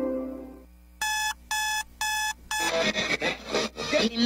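A music bed fades out, then four short identical electronic beeps sound about half a second apart, a steady pitched tone each. They open a radio station promo, whose music starts right after the fourth beep.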